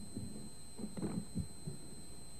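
Steady low hum of an old recording's room tone, with a few soft, faint low thumps.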